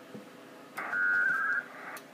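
A burst of about a second of WINMOR digital-mode data tones from the HF radio during a Winlink email transfer: several steady tones together that break into a warbling trill, then stop. A sharp click follows near the end.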